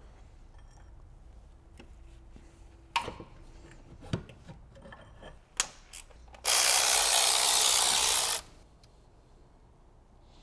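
Open-end wrench clicking on the hex of a BMW N62 V8's exhaust camshaft as it is turned against the valve springs: a few sharp metallic clicks and knocks. Near the end comes a loud, even hiss lasting about two seconds.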